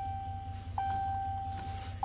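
Dashboard warning chime of a Ram pickup, sounding with the ignition on and the engine not running. It is a long, steady electronic tone that restarts about a second in, over a low steady hum.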